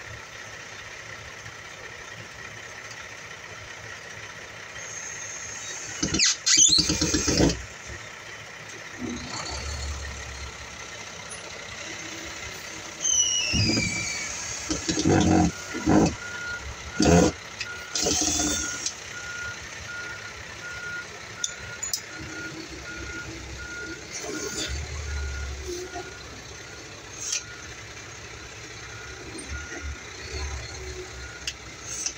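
A cordless drill running in several short bursts as screws are driven to fix a round electrical box to wood siding. Through the second half a vehicle's reversing beeper sounds steadily, about two beeps a second.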